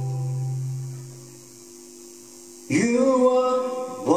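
Live band with acoustic guitars and male vocals: a held chord rings and dies away, then about three-quarters of the way through, male singing comes back in with the band.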